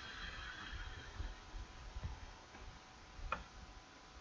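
Faint computer keyboard and mouse handling: soft low thumps, and a single sharp click a little over three seconds in.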